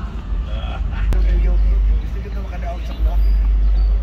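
Heavy, gusting wind rumble on the microphone, with faint distant voices and a single sharp knock about a second in.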